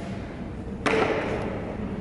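Cricket bat striking a ball off a batting tee: one sharp knock about a second in, echoing in the hall.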